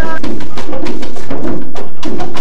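A Latin band's percussion section, congas and drums, playing a dense rhythm of sharp strikes with short low drum tones, just after a sung line cuts off at the very start.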